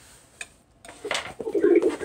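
Rustling of a cardboard gift box being handled and opened, starting about a second in, with a woman's low drawn-out 'ooh' of surprise near the end.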